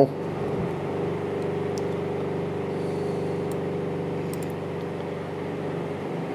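Steady low mechanical hum of several even tones, unchanging throughout, with a few faint ticks.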